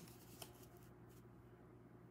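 Near silence: room tone with a steady low hum and one faint click about half a second in.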